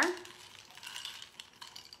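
A straw stirring ice in a cocktail glass: a soft, quiet swishing with a few faint light clinks.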